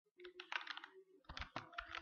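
Typing on a computer keyboard: a quick run of keystrokes with a short pause about a second in.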